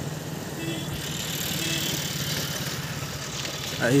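A steady low engine hum over a general outdoor background noise.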